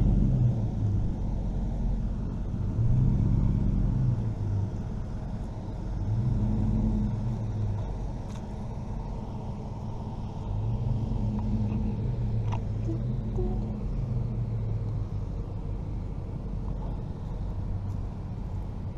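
Low engine rumble of a slow-moving motor vehicle, its low hum swelling and easing off several times.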